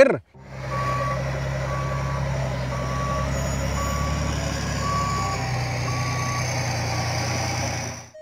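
LGMG MT60 mining dump truck with its engine running steadily and its reversing alarm beeping about once a second.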